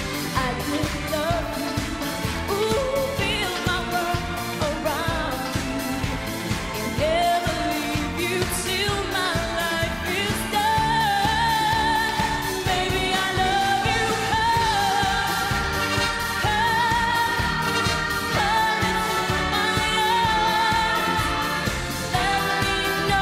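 A woman singing a pop song live into a microphone over a backing track with a steady dance beat.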